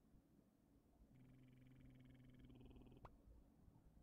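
Near silence: a faint low buzz for about two seconds, cut off by a brief click.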